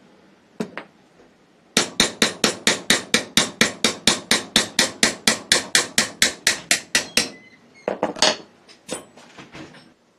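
A hammer tapping rapidly on the metal parts of an AR-style rifle upper and barrel, about thirty light, even strikes at five or six a second, then a few more scattered taps near the end.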